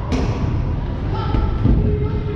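Rumble of wheelchair wheels rolling over a concrete skatepark floor, picked up by a camera on the chair, with a sharp knock just after the start and scattered thuds. Voices sound faintly in the background.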